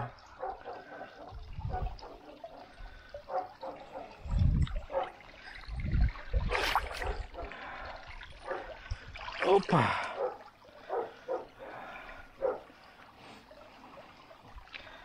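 Water sloshing and dripping in a shallow garden pond as someone wades through it, in irregular splashes with a few dull low thumps.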